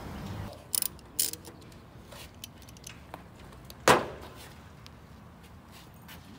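A few light clicks in the first second and a half, then one sharp knock with a short ringing tail about four seconds in, over a faint steady background.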